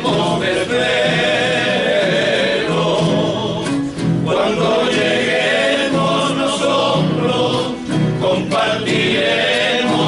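A group of men singing together in unison, with several acoustic guitars strummed alongside: a Cuyo tonada sung as a funeral farewell. The singing goes in long phrases with brief breaks between them.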